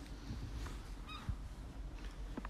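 Quiet background inside a parked car's cabin: a steady faint low hum, with one short faint chirp about a second in.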